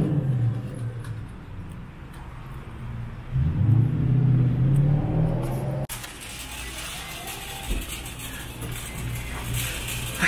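A car engine running close by, growing louder for about two seconds. It is cut off suddenly by the even hiss of a supermarket interior with faint background music.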